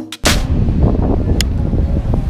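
Music with sharp drum hits cuts off about a quarter second in. It gives way to a loud, steady low rumble of wind buffeting the microphone, with one sharp click about one and a half seconds in.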